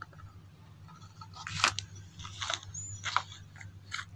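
Short, faint scrapes of fingers working thick cream out of a plastic jar and wiping it into a glass bowl. A few strokes come from about a second and a half in, over a low steady hum.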